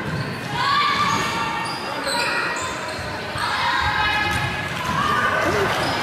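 Basketball game in a gymnasium: a ball bouncing on the hardwood court under the voices of players and spectators, all echoing in the large hall.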